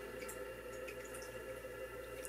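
Quiet room tone: a faint steady hum with a few soft, scattered ticks.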